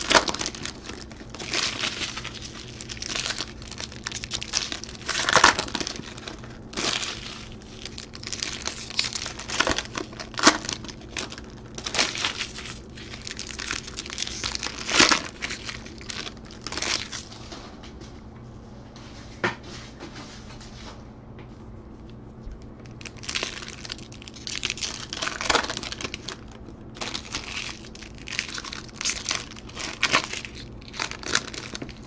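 Foil wrappers of Topps Chrome trading-card packs being torn open and crinkled in the hands, in repeated bursts of crackling with a quieter lull about two-thirds through, over a faint low steady hum.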